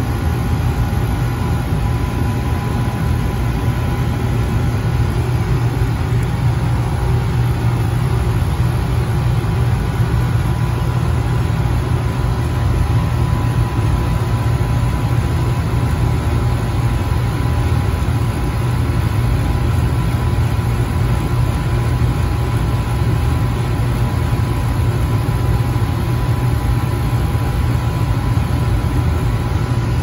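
Compressor of a commercial water-cooled air-conditioning unit running steadily just after restart: a loud, even, low hum with a few faint steady higher tones over it.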